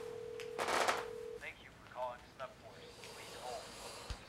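A steady single-pitched telephone tone on the line after dialling, cutting off about a second and a half in, with a short hiss just before that. Faint, quiet talk follows.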